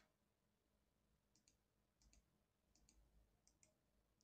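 Faint computer mouse clicks over near silence: four pairs of quick clicks, starting about a second and a half in, each pair under a second after the last.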